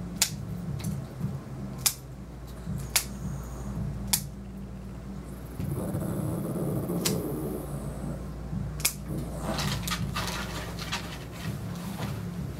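Grooming scissors snipping, single sharp clicks about a second or two apart, over a steady low hum, with a stretch of softer rustling in the middle.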